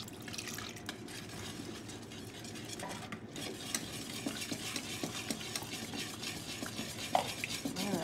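Wire whisk beating a thin, liquid yogurt-and-cream sorbet mix in a stainless steel bowl: a steady, rapid scraping and clicking of the wires against the metal.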